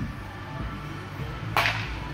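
A baseball bat swung at a pitch: one short, sharp swing-and-hit sound near the end.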